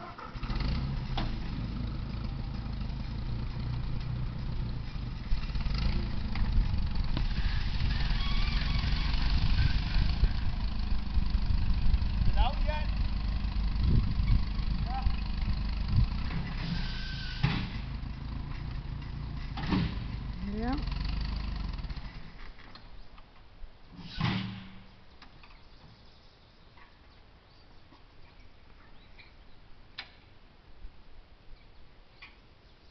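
Ford farm tractor engine running hard under load, straining to pull a tree's root out of the ground. It starts abruptly, gets louder about five seconds in, and drops away after about twenty-two seconds.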